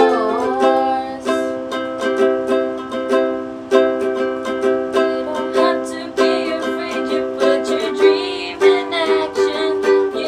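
A ukulele strummed in a steady rhythm through the four chords C, G, A minor and F, with young women's voices singing a pop song over it.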